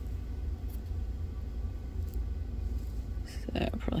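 Steady low background hum with a couple of faint, light taps.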